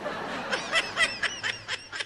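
A person snickering: a quick run of short laugh pulses, about six a second, starting about half a second in.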